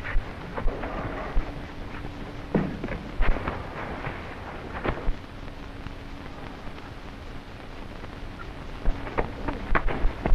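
Fistfight on the ground: irregular thuds and scuffles of blows and bodies hitting the turf, spaced a second or so apart. They sit over the crackle and hiss of an old optical film soundtrack, with a faint steady hum coming and going.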